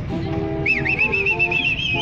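Street orchestra music playing, with a shrill whistle cutting in a little over half a second in: it warbles quickly on one high pitch, then slides up and holds a higher note near the end.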